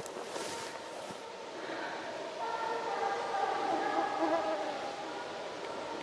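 A fly buzzing close by in a wavering, drawn-out hum for about two and a half seconds, starting about two seconds in, over quiet forest background.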